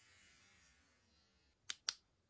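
A small plastic push-button switch clicking twice in quick succession near the end, about a fifth of a second apart, with faint room hiss before it.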